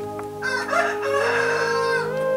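A loud animal call starting about half a second in and lasting about a second and a half, over background music with steady held notes.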